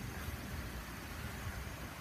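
Steady low hum with a faint even hiss and no distinct events: background noise.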